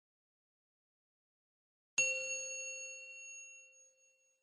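A single bell-like chime sound effect, struck about halfway through, ringing out and fading away over about two seconds.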